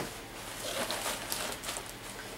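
Light, irregular rustling of a clear plastic bag and dry Spanish moss as handfuls of moss are pulled out.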